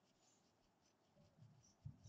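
Near silence: room tone, with only a few faint low sounds in the second half.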